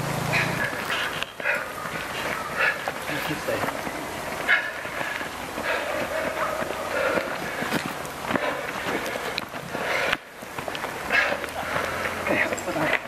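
Indistinct voices of spectators and competitors talking and calling out in short bursts, with nothing clear enough to make out as words.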